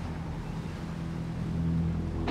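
Low, steady drone of a crab-fishing boat's engines, a hum of several low tones with no sudden sounds.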